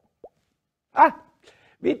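Two soft lip pops as a man puffs on a tobacco pipe, followed about a second in by a short, loud vocal sound falling in pitch; speech begins near the end.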